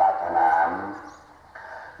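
A voice speaking Thai, sounding muffled, finishes a phrase early on, drops to a lull of about half a second, and picks up again sharply about a second and a half in.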